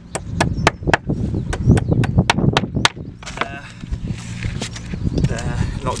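Hammer striking nails in pallet wood: a run of about nine quick, sharp blows that stops about three seconds in, clinching the nail points that came through flat against the wood.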